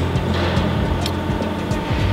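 A steady low machine hum with a faint steady high tone above it.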